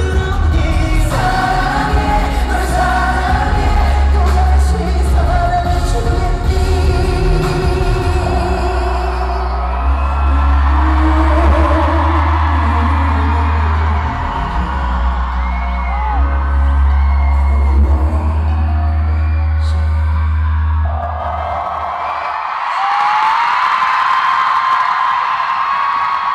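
Live pop ballad with male singing and heavy bass through a concert sound system, recorded from the audience. The music ends about 21 seconds in, and the crowd cheers and screams.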